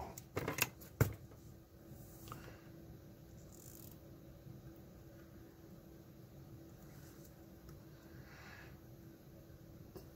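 A few sharp clicks and taps in the first second as hand tools and a circuit board are handled on a workbench, then quiet with a faint steady hum while the part is soldered.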